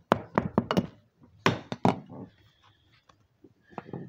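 A run of knocks and thuds from objects being handled close to the microphone. There is a cluster in the first second and a few more about a second and a half in.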